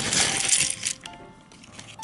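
Small flat pieces of a miniature kit tipped out of a plastic zip bag, clattering onto each other in a quick run of clicks for about the first second, then dying away. Faint background music plays throughout.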